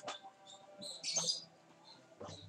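Small birds chirping in short, high-pitched calls, a cluster of them loudest about a second in; a single click at the very start.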